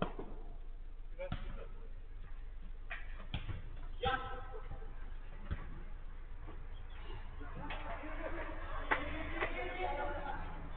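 A football being kicked and thudding about on an artificial-turf five-a-side pitch: a series of sharp, separate thuds a second or more apart, mixed with players calling out, the shouting louder in the last few seconds.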